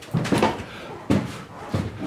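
Footsteps on the bare metal floor panels inside an aircraft fuselage: several short knocks spread across the two seconds.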